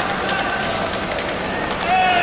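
Indistinct voices over a steady wash of hall noise in a large sports arena, with a clearer voice coming in at the very end.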